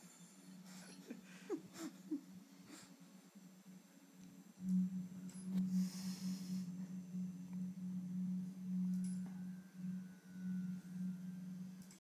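A steady low hum that grows louder about five seconds in and stays on, with a short hiss shortly after.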